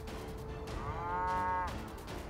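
A cow mooing once, for about a second, the call rising at its start and then held, over background music with a steady held tone.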